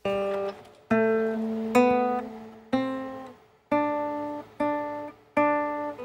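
Solo acoustic guitar playing a slow passage: chords struck about once a second, seven in all, each ringing out and fading before the next.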